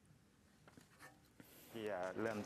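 Quiet room tone with a few faint clicks, then a man starts speaking near the end.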